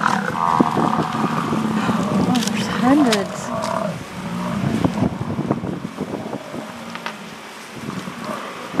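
American bison bellowing: low, drawn-out roars with a rough edge, loudest in the first half and fading after about four seconds.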